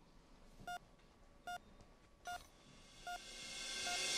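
Hospital bedside patient monitor beeping with the heartbeat: short, identical single-pitch beeps about every 0.8 seconds, a steady rhythm of roughly 75 a minute. Near the end a rising swell of sound fades in under the beeps.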